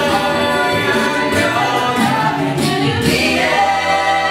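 A mixed-voice a cappella group singing in close harmony. About three seconds in, the voices settle onto a long held chord.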